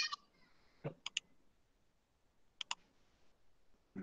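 Computer mouse clicks while a slideshow is being opened: a cluster of clicks at the start, a quick double-click about a second in and another a little past halfway, faint against a quiet room.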